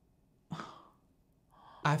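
One short breathy exhale about half a second in, fading quickly, followed by a faint breath in just before speech.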